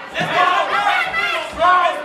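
Fight crowd yelling and cheering, many voices shouting over one another.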